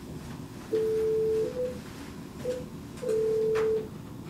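Telephone tones: two long, steady electronic beeps about two seconds apart, with two short, slightly higher blips between them, over low room noise.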